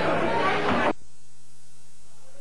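Live music and voices cut off abruptly about a second in, leaving a steady electrical mains hum from the band's amplification.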